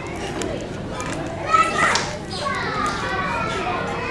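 Young children's voices chattering and calling out, with no words clear enough to transcribe.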